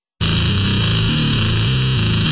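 Grindcore song intro: a heavily distorted electric guitar plays a riff alone, with no drums yet. It cuts in suddenly about a fifth of a second in.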